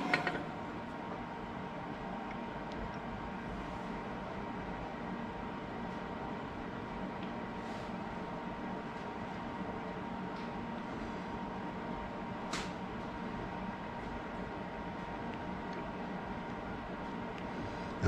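Steady machine hum with a faint steady tone, and a few light clicks as the lathe duplicator's follower is adjusted by hand, one a little past the middle.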